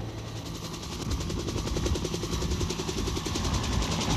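Bell UH-1 'Huey' helicopter's two-blade main rotor beating in a fast, even rhythm of about ten blade slaps a second, growing louder from about a second in as it comes closer.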